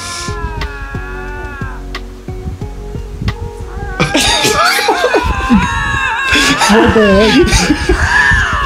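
Two lynx yowling at each other while facing off: long, wavering cat wails. One drawn-out wail comes in the first two seconds, then more overlapping, warbling wails from about four seconds in.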